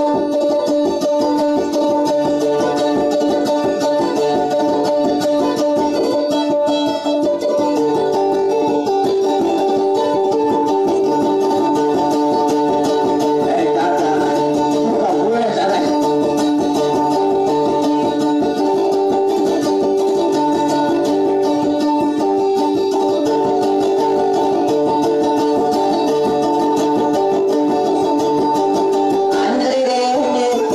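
Dayunday music played on plucked string instruments: a fast, steadily picked melody repeating over a low bass line, with the melody shifting to a new figure about eight seconds in.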